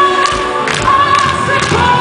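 Live symphonic metal heard from inside the crowd: a female voice holds a few long high notes over a choir backing, with drum hits underneath.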